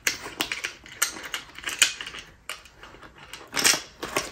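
Irregular clicks and crinkling of a diamond-painting tool-kit pouch being handled, with a louder cluster near the end.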